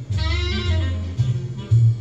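Jazz playing in the background: a saxophone holds a note with vibrato over bass notes that change about twice a second.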